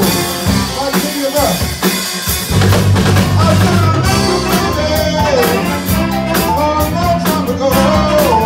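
A live soul band plays: a drum kit keeps a steady beat under electric bass, guitar and a horn section with saxophone, and a singer's voice rises and falls over the band.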